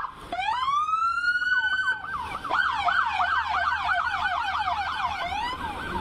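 Police car siren: a wail that rises over about a second and a half and holds, then switches about two seconds in to a fast yelp of roughly four rises and falls a second.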